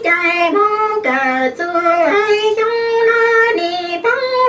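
A high solo voice singing a melody of long held notes that step from one pitch to the next.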